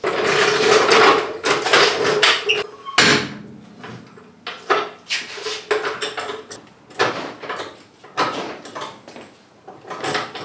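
A hydraulic floor jack being pumped by its long handle to raise the side-by-side, with metal clanking and rattling on each stroke. The first three seconds are louder and continuous, then the strokes come separately about once a second.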